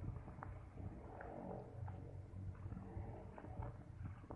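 Outdoor background rumble, low and steady, with faint scattered ticks.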